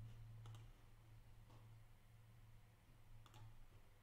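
Near silence with a low steady hum and three faint clicks at a computer: one about half a second in, one at a second and a half, and one just after three seconds.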